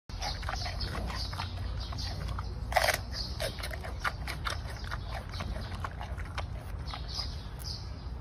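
Giant panda chewing a bamboo shoot: rapid, repeated crunching bites, with one louder crunch a little under three seconds in, over a low steady rumble.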